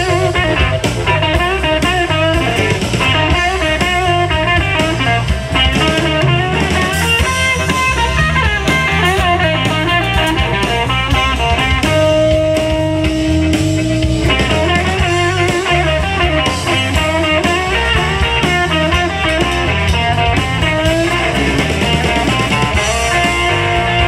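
Live electric blues band: a harmonica played into a vocal microphone leads with bending notes over electric guitar and drum kit, holding one long note for about two seconds near the middle.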